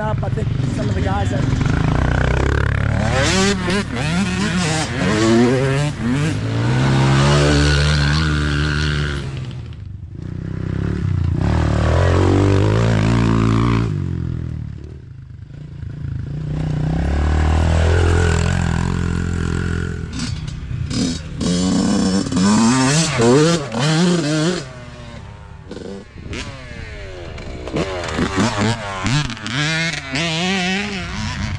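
Small youth dirt bike engines revving as several bikes ride past one after another, the pitch rising and falling with the throttle and gear changes.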